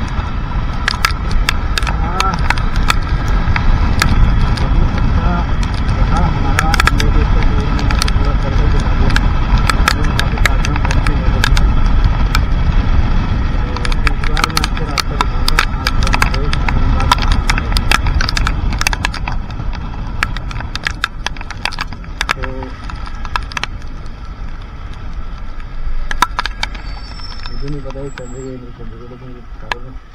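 Wind rushing over the camera microphone on a motorcycle riding in the rain, with many sharp ticks of raindrops striking the camera. The rush eases in the last several seconds as the bike slows.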